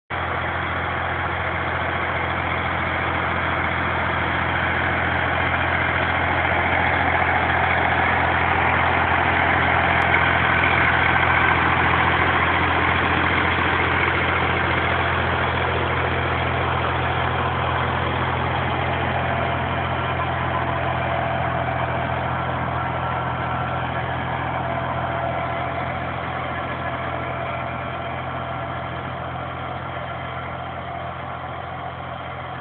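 Torpedo 4506 tractor's diesel engine running steadily while pulling a rotary tiller through soil. It grows louder toward the middle, then slowly fades as the tractor works away.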